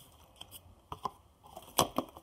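Scattered light clicks and taps of kitchen items being handled, the loudest near the end.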